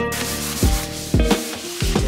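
A tissue rubbed back and forth across the bottom of a white kitchen drawer, an even rubbing hiss of wiping, over background music with a steady beat.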